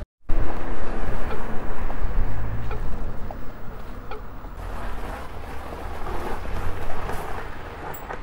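Wind buffeting the microphone and low road rumble from an electric scooter ridden slowly along a street, easing off over the second half as the scooter slows to a near stop.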